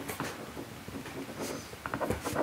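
Sheets of paper rustling and being handled, with a few small scattered clicks.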